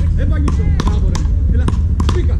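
Wooden beach rackets hitting a small ball in a fast rally: a quick series of sharp knocks, two or three a second.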